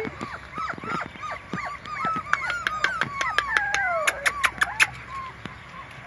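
Five-week-old puppies whining and yelping in short, high, repeated cries, with one longer whine falling in pitch about three seconds in. About four seconds in, a quick run of sharp clicks.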